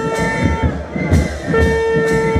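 Carnival brass band playing: a long held brass note, then a second one starting about halfway through, over a bass-drum beat of about two thumps a second, amid crowd noise.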